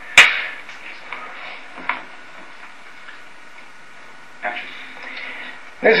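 A film clapperboard's sticks snapped shut once, a single sharp wooden clap just after the start that slates the take before the actor's line. It is followed by quiet studio room tone.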